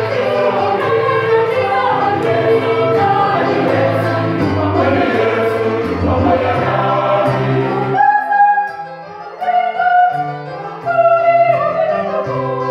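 Choir singing in harmony. About two-thirds of the way through, the sound thins out, with brief breaks between phrases.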